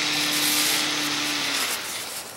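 Steady mechanical noise, like a motor-driven machine running: a hiss with a low hum that stops about one and a half seconds in.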